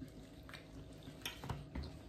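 Faint handling noises as a burrito in a flour tortilla is picked up and gripped in the hands: a few soft clicks and rustles, with a soft low thump in the second half.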